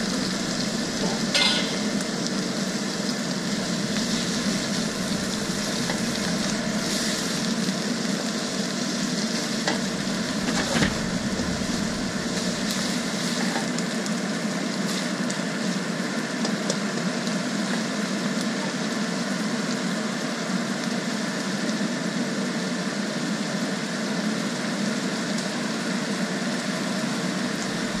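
Baby scallops and sliced onion sizzling steadily in hot oil in a wok, with a few short taps and scrapes of a plastic spatula stirring them.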